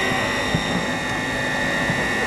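Steady outdoor background noise of a standing street crowd, with a faint constant high tone and no clear single event.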